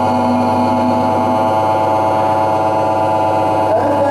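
A man's voice reciting the Quran holds one long, steady note for nearly four seconds, a prolonged vowel (madd) of tajweed recitation, then slides upward into the next phrase near the end.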